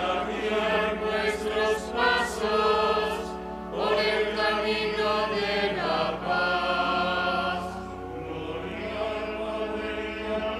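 A choir singing a slow liturgical chant with long held notes, over a steady low sustained accompaniment.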